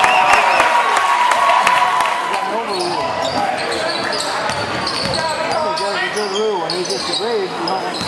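Basketball being dribbled on a hardwood gym floor, the bounces clearest in the first two seconds, over the indistinct chatter of spectators.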